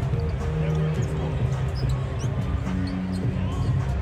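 Arena music playing over the PA, with a moving bass line, while a basketball bounces on the court during live play.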